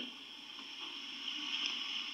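Faint steady hiss of background noise, with no speech.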